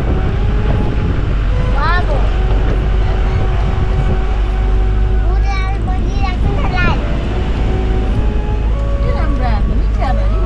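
A car on the move, with a steady low engine and road rumble, and people's voices heard over it now and then.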